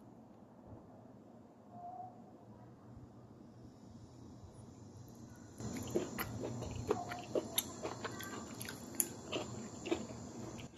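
Someone chewing a mouthful of stir-fried cuttlefish tentacles, peppers and crisp fried garlic slices, with irregular crunchy clicks starting about halfway through.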